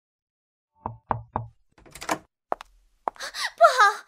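Three quick knocks on a door about a second in, followed by a short click. A voice cries out near the end.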